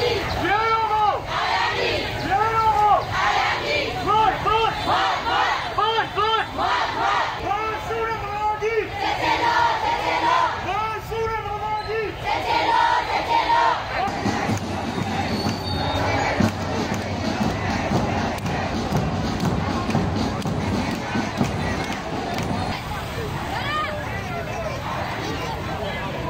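Crowd of protesters chanting slogans in unison in a steady rhythm, about one chant a second. About 14 seconds in the chanting gives way to a general din of crowd voices.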